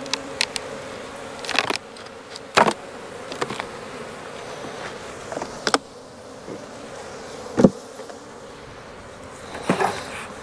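Honeybees buzzing steadily around an opened hive, broken by several sharp wooden knocks and clunks as the hive boxes are pried apart, lifted and set down; the loudest knock comes about three-quarters of the way through.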